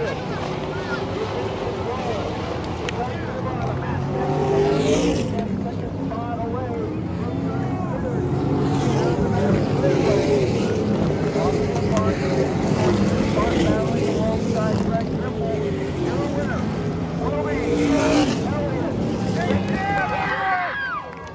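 A field of stock cars racing around a dirt oval, engines held at high revs, with cars sweeping loudly past about five seconds in, again around nine seconds, and near the end.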